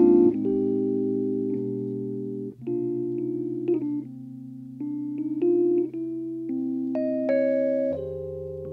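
Nord Stage 2 EX stage keyboard on an electric piano sound, playing slow, sustained jazz chords that change every second or so, over low bass notes.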